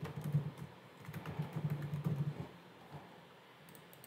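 Typing on a computer keyboard: a quick run of key clicks for about two and a half seconds, then a few scattered keystrokes.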